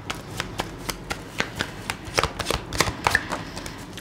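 A tarot deck being shuffled by hand: a quick, irregular run of sharp card clicks and flicks.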